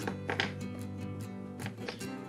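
Soft background music with sustained tones and a few light plucked or tapped notes.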